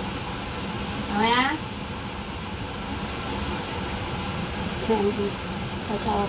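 A toddler's short rising whine about a second in, with a briefer vocal sound near the end, over a steady background hum.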